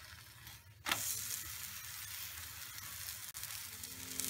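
Gram-flour omelette batter sizzling in oil on a hot iron tava. About a second in it is flipped with a wooden spatula. The sizzle then rises sharply as the still-raw side meets the hot pan, and carries on as a steady hiss.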